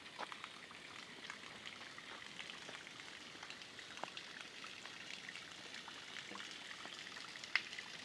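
Faint, steady trickle of spring water running and dripping, with a few small ticks scattered through it.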